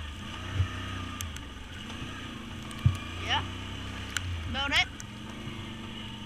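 Can-Am Outlander ATV engine running steadily under way, with a sharp knock about three seconds in and a lighter one shortly after the start.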